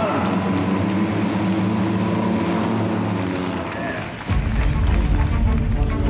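Engines of a pack of pre-war Bentley racing cars running together as a steady drone. About four seconds in it turns suddenly louder and deeper.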